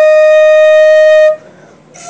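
Flute music: one long held note that stops about a second and a quarter in, followed by a short pause.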